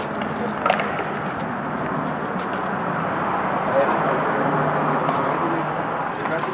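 Steady city street noise: a continuous wash of traffic with indistinct voices of people talking.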